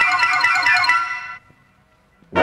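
Symphony orchestra recording: a passage of quick, bright ringing notes in the upper register that stops about one and a half seconds in, leaving a short silent pause.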